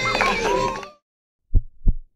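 Music and party voices fade out within the first second, then silence. Near the end come two short, low thumps in quick succession, like a heartbeat sound effect.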